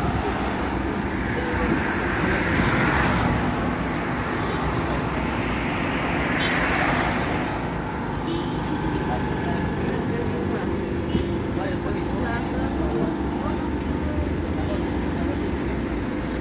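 Ikarus 415T electric trolleybus standing at a stop with a steady low hum, amid street traffic. Two swells of rushing noise come about two and six seconds in.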